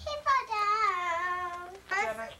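A young child singing one long, slightly wavering note that slowly falls in pitch, after a short syllable.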